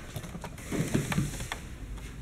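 Faint handling noise: a few light clicks and soft knocks over a low background hum.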